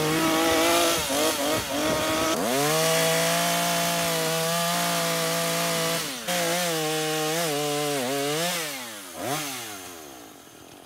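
Chainsaw cutting a notch into a dead tree limb: the engine holds a steady note under load through the middle, dips and rises in short swings in the later seconds, and winds down near the end as the throttle is let off.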